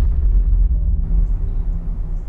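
Cinematic logo-sting sound effect: the deep rumbling tail of a boom, holding low and easing off slowly.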